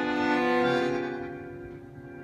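Live tango ensemble music: a bandoneón with bowed strings holds a chord that fades away over the second half.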